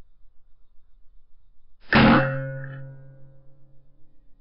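A single shot from an unregulated Evanix Rainstorm SL .22 pre-charged pneumatic air rifle about two seconds in: a sharp report followed by a metallic ringing tone that fades over about a second.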